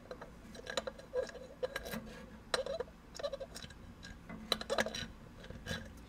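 Light, irregular clicks and taps of a motorcycle cam cover being handled and pressed into place over gasket alignment studs on the engine case.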